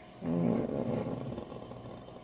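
A woman's short vocal sound, voiced at first and then trailing into a breathy exhale that fades after about a second.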